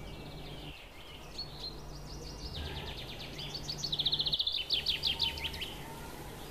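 A bird singing: chirps that build to a rapid trill of short, repeated notes in the second half, over a low steady hum.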